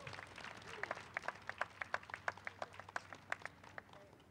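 An audience applauding: faint, scattered hand claps that thin out and stop near the end.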